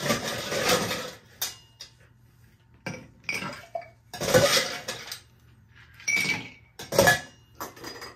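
Ice cubes scooped with a metal scoop from a stainless steel ice bucket and dropped into a glass cocktail shaker, clinking and clattering in about six separate scoops.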